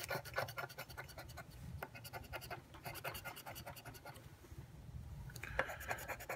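A paper lottery scratch ticket being scratched in quick short strokes, several a second. The strokes thin out in the middle and pick up again near the end.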